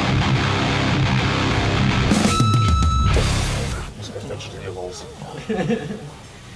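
A punk band's recorded song starting loud, with heavy distorted electric guitars. About four seconds in the music drops much quieter and voices start talking.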